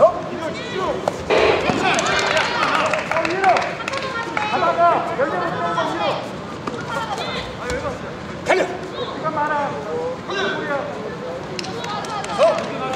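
Several voices call out and talk over one another throughout. A few sharp thumps come through, the clearest about a second and a half in and around eight and a half seconds.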